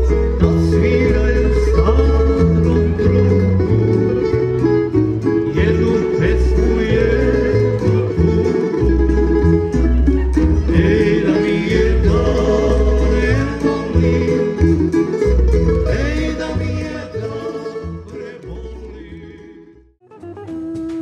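Tamburica ensemble playing: plucked tamburicas over a double bass line, with men singing. The music fades out over the last few seconds.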